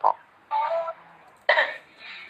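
A woman's short non-speech vocal sounds with a tissue held to her mouth: a brief pitched sound about half a second in, then a sudden, sharper one near the end.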